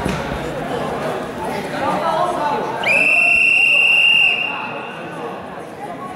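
A referee's whistle gives one steady blast of about a second and a half, about halfway through, stopping the wrestling bout. Voices of coaches and spectators come before it.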